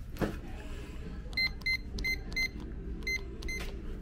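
Electronic keypad door lock beeping once for each key pressed as a PIN code is entered: a string of short, same-pitched beeps, with a short pause before the last two.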